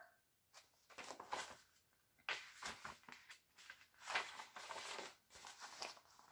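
Faint rustling and handling of a paper booklet as its page is turned, in several short scattered bursts.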